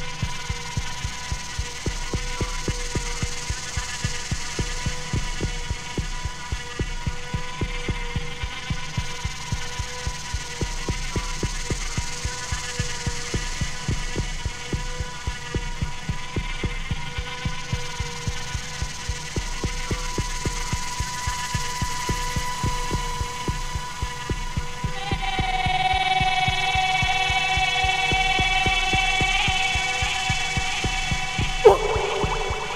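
Live electronic music: a steady, heartbeat-like low pulse under held droning tones. About 25 seconds in, a brighter sustained chord enters and the music gets a little louder.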